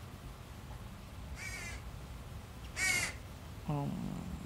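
A crow cawing twice, the second caw louder. Near the end comes a short low sound falling in pitch, like a voice.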